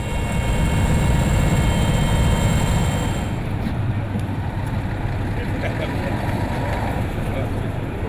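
Mi-8T helicopter's twin turboshaft engines and rotor running, heard in flight: a loud, steady noise with a high whine over it. About three seconds in it changes abruptly to a lower, steady engine rumble and the whine is gone.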